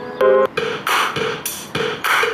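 Music with a steady drum beat of about three hits a second, playing through a TaoTronics TT-SK06 portable Bluetooth stereo speaker and streamed from a smartphone. A short held note sounds just before the beat starts.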